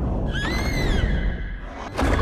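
Mothra's high-pitched screech, a single call that begins about a third of a second in, rises and then falls in pitch, and lasts under a second, over a steady low rumble.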